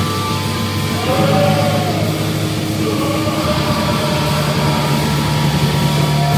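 Live thrash metal band playing loudly: distorted electric guitar and bass with singing.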